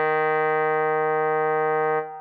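Trombone holding one long low note, steady and unaccompanied, that is released at the very end and fades out with a short reverberant tail.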